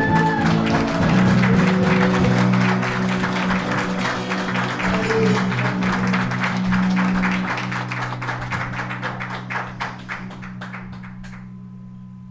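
Live worship band ending a song: held low chords fading out, with dense clapping over them that dies away shortly before the end.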